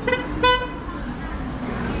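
A vehicle horn gives a short, single-pitched toot about half a second in, over steady street traffic noise.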